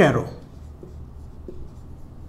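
Marker pen writing on a whiteboard: faint strokes of the felt tip across the board, with a few light ticks.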